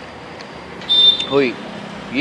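Steady street traffic noise, with a short, loud, high-pitched beep about a second in, followed by a brief hum from a person.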